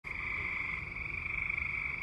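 A frog calling: one steady, high-pitched trill.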